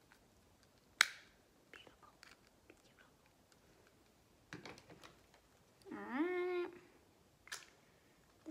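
A small plastic bottle being handled, with a sharp click about a second in and scattered light taps and clicks. A short hummed voice sound rises and then holds a little past the middle.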